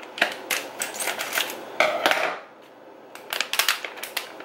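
Pouch of dried Chinese herbal soup mix being handled and opened: its packaging crinkles and crackles in a quick string of sharp clicks, pauses, then crackles again near the end.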